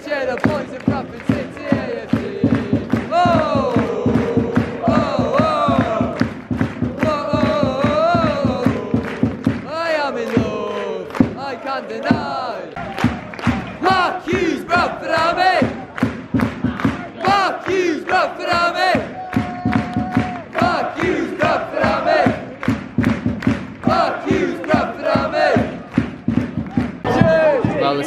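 Football crowd in the stand singing a chant together, with hand-clapping close around the microphone.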